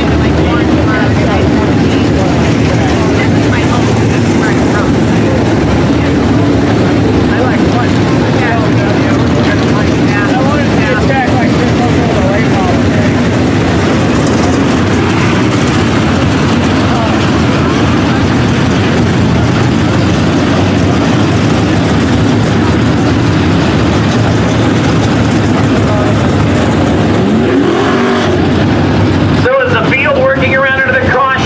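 A field of dirt-track modified race cars running laps, the loud, continuous sound of many engines overlapping, their pitches rising and falling as cars lift and accelerate through the turns. Near the end one engine climbs in pitch as it accelerates.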